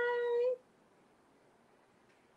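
A woman's long, high, sing-song "bye", held on one steady pitch and cutting off about half a second in, then near silence.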